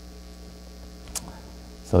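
Steady electrical mains hum in the sound system, heard during a pause in speech, with a single short click a little over a second in.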